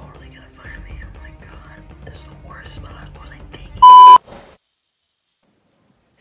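Quiet whispered speech over faint background music, then about four seconds in a loud electronic beep: one steady tone about a third of a second long, cutting off into dead silence.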